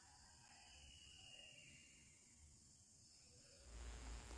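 Near silence: faint background hiss, with a faint low hum coming in near the end.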